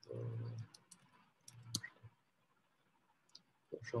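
Faint, scattered clicks from computer input, a mouse and keyboard, with two short low sounds about half a second long, one near the start and one about a second and a half in.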